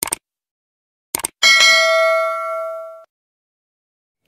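Subscribe-button animation sound effect: short clicks at the start and again about a second in, then a bright notification-bell ding that rings for about a second and a half and cuts off.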